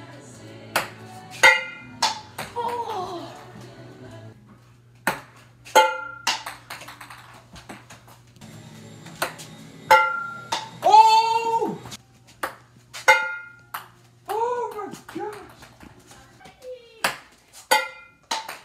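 A ping-pong ball bouncing on hard surfaces in quick pinging knocks, in little clusters every few seconds as shot after shot is tried and missed. Loud 'oh!' exclamations come between the attempts, the loudest about eleven seconds in.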